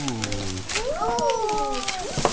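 Wrapping paper rustling and tearing as a small gift is unwrapped by hand, with a drawn-out voice that rises and falls over it.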